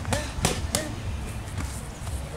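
Boxing gloves striking handheld focus mitts: three sharp smacks in quick succession in the first second, then only a faint hit or two.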